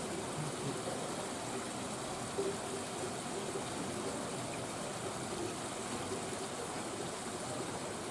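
Steady rushing noise of running water, unbroken throughout.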